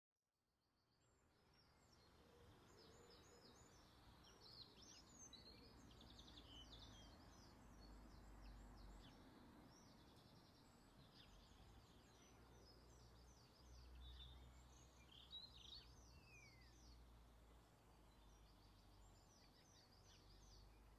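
Faint birds chirping and trilling, many short calls in quick runs, over a low steady outdoor rumble. It fades in from silence over the first couple of seconds.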